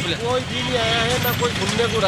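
Roadside traffic noise: vehicle engines running, with people's voices talking over it.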